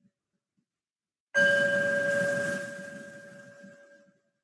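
A meditation bell struck once about a second in, its clear ringing tone fading away over the following seconds.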